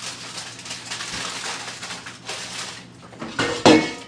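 Kitchenware being handled at a stovetop, with aluminium foil rustling, then one loud ringing clatter of dishware about three and a half seconds in.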